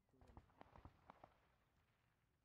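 Near silence: faint distant voices and a quick run of five or six light knocks in the first second or so.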